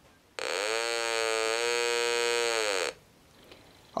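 Buzzy tone from a 555-timer audio oscillator through a small 8-ohm, 0.4 W speaker. It starts about a third of a second in, rises briefly in pitch, then holds steady until it cuts off near the three-second mark. It sounds because the antenna coupler is tuned off the null: the resistive bridge shows a mismatch, and the bridge voltage drives the oscillator.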